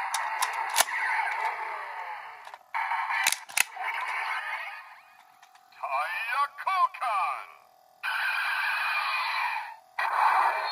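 Kamen Rider Drive toy belt (Drive Driver) playing electronic sound effects and recorded voice and music calls through its small speaker, thin and lacking bass. Sharp plastic clicks come near the start and twice close together about three seconds in as the Shift Car in the wrist brace is worked. A warbling, sweeping effect follows around six to seven seconds in.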